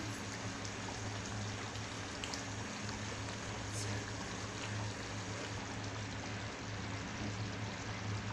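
Thick chicken curry gravy simmering in a pan on a gas burner, bubbling with a few faint pops over a steady hiss and low hum.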